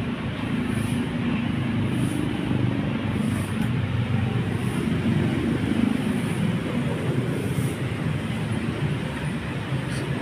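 A large diesel bus engine idling with a steady low rumble.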